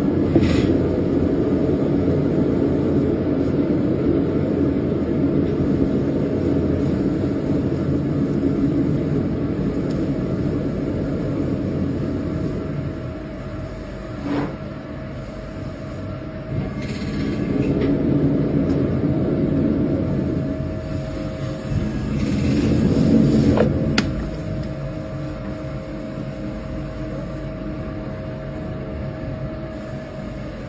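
Potter's wheel running with a steady low rumble and a faint motor hum, swelling louder twice in the second half, with a couple of sharp clicks.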